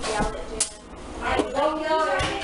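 A single sharp click about half a second in, from a removed dryer timer being handled, with voices talking after it.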